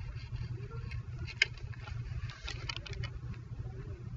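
Computer mouse clicks while chart settings are changed: a sharp click about a second and a half in and a quick cluster of clicks a second later, over a steady low hum.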